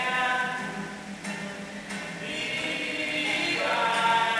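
A group of voices singing together on long held notes, thinning out about a second in and coming back fuller near the end.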